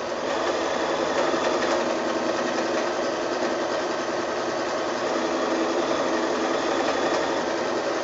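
Bernina sewing machine running steadily, stitching an open zigzag to overcast the raw edges of a fabric seam.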